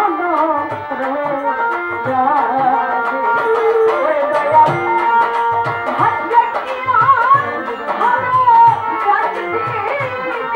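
Bengali Baul folk song performed live: a woman singing with violin, over a hand drum beating a steady rhythm.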